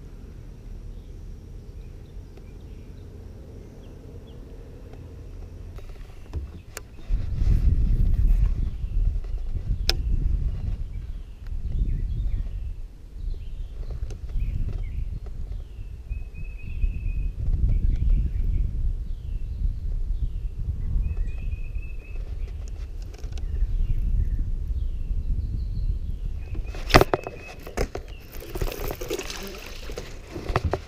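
Gusty low rumble of wind buffeting the microphone on open water, with a small bird chirping again and again in the background. Near the end comes a sharp click and a short burst of noise as a bass is hooked and reeled in.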